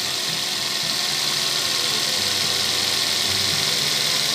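Toyota Rush's four-cylinder petrol engine idling steadily under the open hood, just after being jump-started from a motorcycle battery because its own battery is run down.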